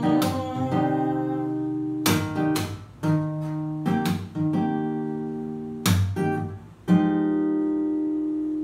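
Acoustic guitar strummed in single chords a second or two apart, each left to ring. The last chord, about seven seconds in, is held and rings out.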